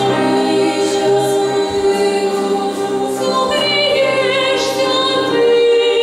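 Girls' vocal ensemble singing a lullaby in several parts, holding long, slow notes, with vibrato on the upper voices about four to five seconds in.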